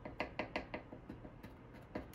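A spice shaker being tapped and shaken to get ground red spice out onto a wooden cutting board. There is a quick run of light taps, about five a second, in the first second, then a few fainter ones.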